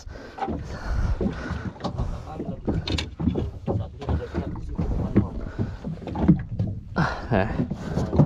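Irregular knocks and handling noises on a small wooden fishing boat's deck, over a low rumble, with one sharper knock about three seconds in.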